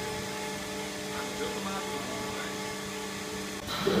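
Steady hum of a Codatto MBY 2214 panel bender standing by, a mix of several steady tones, with faint voices behind it. Just before the end a louder rush of noise starts.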